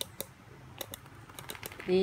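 A few light, scattered clicks and taps at close range, about half a dozen over two seconds; a woman starts to speak at the very end.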